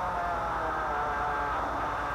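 Racing touring car engine heard from inside the car, running steadily with a slight rise in pitch as it pulls away from the start.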